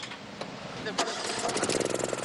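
Honda EU-series portable generator's engine starting: it catches about a second in and runs with a rapid, even firing pulse that grows louder. The generator is coming back to life after being brought back from a breakdown caused by too much oil.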